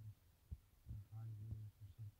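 Faint low hum that cuts in and out in short patches, with a few soft clicks.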